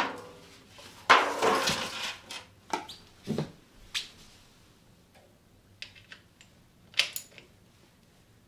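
Disposable aluminium foil drain pans clattering and crinkling as they are pushed into place on a wooden floor, the loudest sound about a second in, followed by a few scattered light metallic clicks and knocks as hands and a tool work at the primary drain plug.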